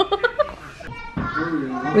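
Voices talking, a child's among them, with a short burst of hiss about a second in.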